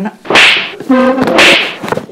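Two loud, whip-like slaps about a second apart, a hand striking a head, with a short vocal cry between them.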